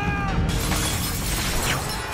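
A large stained-glass window shattering, with a long crash of breaking glass that begins about half a second in, over dramatic film score music.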